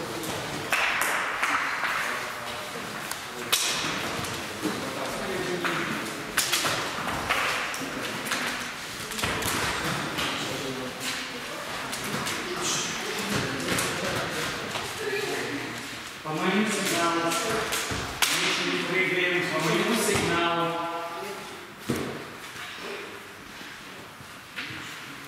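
Indistinct chatter of several students' voices, broken by a few irregular thumps of volleyballs hitting the gym floor.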